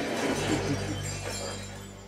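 Glass and crockery shattering, with the crash of breaking pieces dying away over about two seconds.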